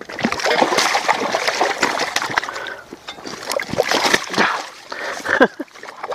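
Common carp splashing in shallow water at the bank as it is grabbed by hand: an irregular run of wet slaps and splashes.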